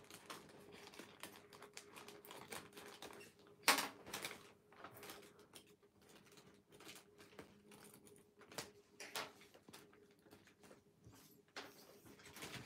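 Faint rustling and crackling of a large sheet of origami paper as fingers and a folding tool flatten and crease its folds: a string of small irregular clicks, the loudest a little under four seconds in.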